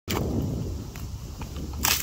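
Rough crunching and handling noise of split wood and a metal screw log splitter, with one short sharp crack near the end.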